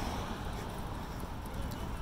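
Wind buffeting the microphone and tyre noise on a paved path during a bicycle ride, with a few light clicks.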